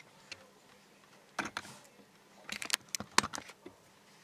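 A few light clicks, then a quick rattling cluster of them about two and a half seconds in, from beaded bracelets of glass beads and crystals being handled on the wrists.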